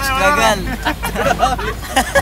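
Men talking and chattering inside a moving car, over the steady low rumble of the car's cabin.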